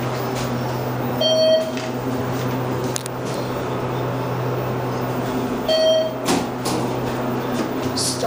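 Steady low hum of a ThyssenKrupp Synergy hydraulic elevator car in motion. The car's electronic signal beeps twice, about four and a half seconds apart: short single tones, the loudest sounds here.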